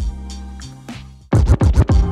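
Forward scratches on a turntable's control vinyl over a beat, with the crossfader cutting out the backward strokes. The beat plays alone at first, then about a second and a third in comes a quick run of about five short scratch strokes.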